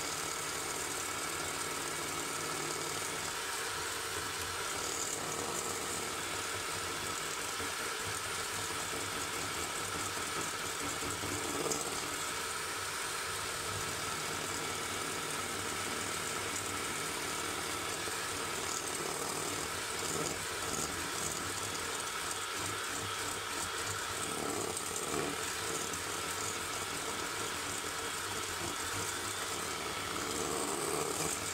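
Triomph electric hand mixer running steadily, its beaters whipping eggs and sugar in a stainless-steel bowl. The mixture is being beaten to a thick, pale, cream-like foam that makes the cake batter light.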